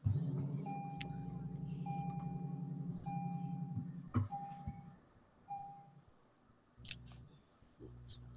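Lexus LC500's 5.0-litre V8 starting: the engine catches loudly at once and runs at a steady idle for about four seconds, then drops to a much quieter idle. A car warning chime beeps five times at the same pitch over it.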